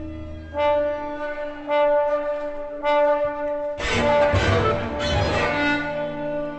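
Chamber orchestra playing 20th-century music built on instrumental colour. Three brass-led chords, rich in overtones, enter about a second apart, then a dense, loud mass of brass and strings comes in about four seconds in.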